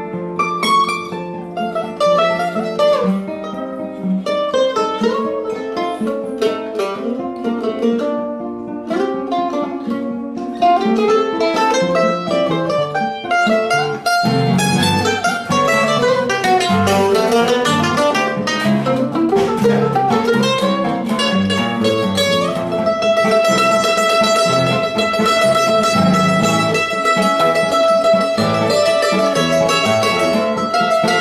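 Brazilian mandolin (bandolim) and seven-string nylon-string guitar playing a choro duet, the mandolin on a quick melody over the guitar's bass lines. It gets louder about halfway through, and from about two-thirds in the mandolin holds one long high note over the guitar.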